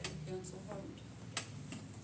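Faint, low voices murmuring in the room, with three sharp clicks; the loudest click comes a little under a second and a half in.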